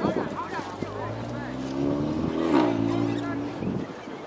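A motor engine drones steadily from about a second in, its pitch rising slightly and falling back before it fades out near the end; voices are heard at the start.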